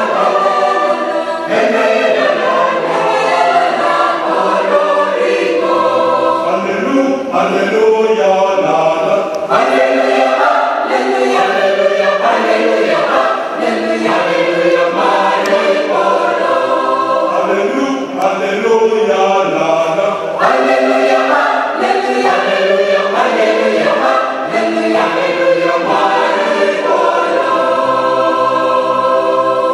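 Mixed church choir of men's and women's voices singing a Christmas carol together in harmony.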